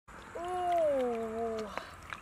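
A girl's voice holding one long, drawn-out vowel that slowly falls in pitch, followed near the end by a short click.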